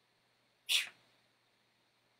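A single short, hissy breath from a man, about two-thirds of a second in.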